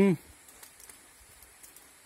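The tail of a spoken word, then quiet outdoor room tone with a faint steady high hiss and a few faint scattered clicks.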